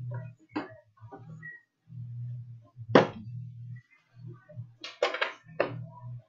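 Hands handling a trading-card box and its tin: a sharp knock about halfway through, then a quick cluster of scraping, rustling sounds near the end.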